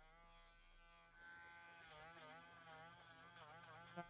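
Faint buzz of a rotary dog nail grinder running on a puppy's nails, its pitch wavering up and down as it is pressed against the nail.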